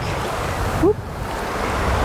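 Shallow surf washing in and foaming around the legs: a steady rush of water.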